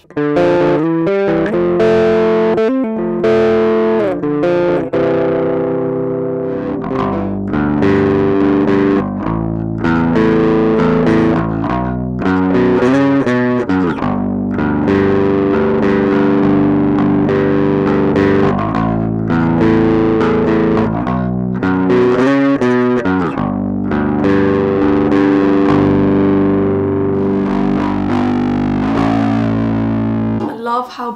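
Spector Euro 5LE five-string bass guitar played through a GoliathFX IceDrive bass overdrive pedal, a continuous distorted riff with a few sliding notes and short breaks. The pedal is set with mids fully up and blend full, giving a trebly, bright sound with punch.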